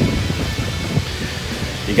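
Uneven low rumble of wind buffeting a phone's microphone.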